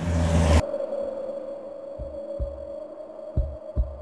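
A loud swelling whoosh with a low rumble cuts off sharply about half a second in, leaving a steady eerie humming drone. Under the drone, a heartbeat sound effect beats twice, each beat a low double thump (lub-dub), about a second and a half apart.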